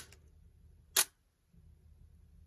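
Nikon DSLR shutter firing a one-second exposure: a sharp click as the mirror and shutter open right at the start, then a second click about a second later as the exposure ends and the mirror returns.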